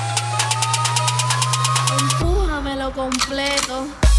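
DJ mix build-up: a synth sweep rising in pitch over a held bass note and hi-hat ticks that come faster and faster. About halfway through, the bass and sweep cut out, leaving a spoken vocal sample in the break before the beat comes back.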